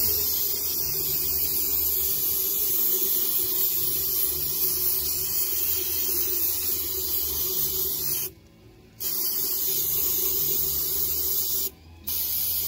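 Aerosol can of CRC electrical contact cleaner spraying in a long steady hiss into the brush housing of an electric hydraulic pump motor, flushing out oil. The spray stops briefly about eight seconds in, then hisses again until just before the end.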